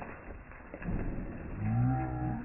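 A low, drawn-out human vocal sound, a long 'oooh', starting about one and a half seconds in. It rises briefly in pitch and is then held. Before it there is only a low, even background noise.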